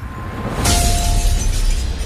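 Logo-intro sound effect: a rising swell that breaks into a sudden glass-shatter crash about two-thirds of a second in, over a deep rumble, with a short ringing tone after the hit.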